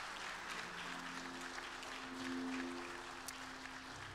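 Congregation applauding with hand claps of praise, with soft sustained musical chords coming in underneath about a second in.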